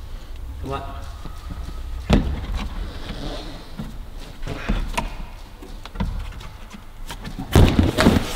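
Scattered thuds of a climber moving on an overhanging indoor bouldering wall, then a heavy thump near the end as he drops onto the padded floor.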